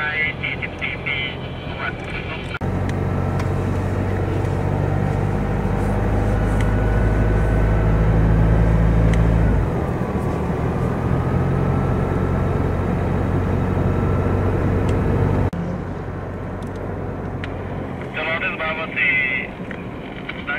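Steady engine hum and road noise of a car driving along a highway, heard from inside the vehicle. It changes abruptly a few times, at cuts in the recording. A person speaks at the start and again near the end.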